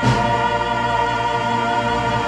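Choir and orchestra holding a full, sustained chord as a closing musical swell. A new chord strikes at the very start, with a bright crash on top, and is then held steady.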